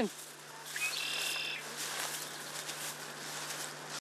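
A bird calls once about a second in: a short note, then a longer held one. Underneath is a steady outdoor hiss.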